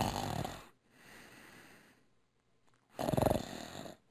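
A man snoring: a loud snore at the start and another about three seconds in, with a softer breath out between them.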